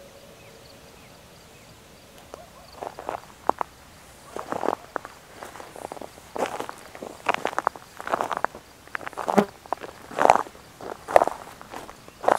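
Footsteps crunching on a dry, cracked mud crust, the baked soil breaking under the shoes. The steps start about two seconds in and come irregularly.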